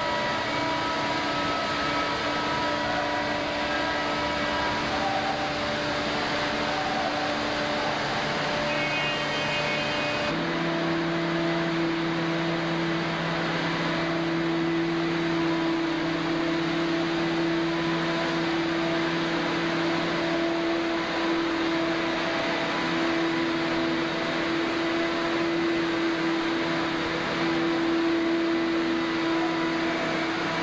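Steady shipboard machinery hum with a loud hiss, the kind of constant drone heard in an aircraft carrier's hangar bay. About ten seconds in its tone changes abruptly to a stronger, lower hum.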